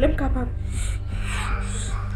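A woman gasping and breathing hard in distress over a steady, low background music bed, with a short spoken word at the start.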